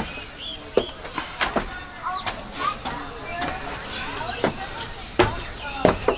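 Footsteps on wooden stairs and plank flooring: a few irregular knocks spaced about a second apart, with faint voices in the distance.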